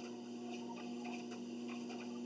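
Treadmill running: a steady electric motor hum with regular soft footfalls on the moving belt, roughly two to three steps a second.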